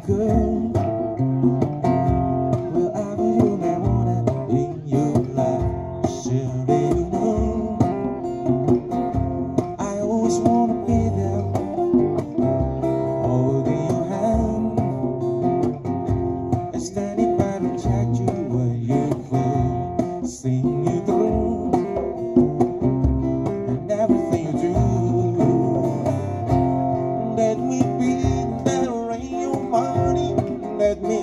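Live acoustic band: two strummed acoustic guitars over a hand-played djembe keeping a steady beat.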